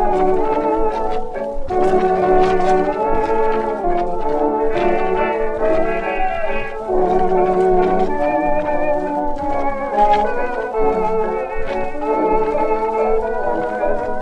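A 1925 shellac 78 rpm record of a dance orchestra playing a waltz, with brass carrying the tune.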